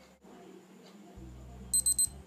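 Casio Baby-G BG-320 (module 1523) countdown timer alarm going off as the timer reaches zero: a rapid run of high-pitched electronic beeps starting near the end.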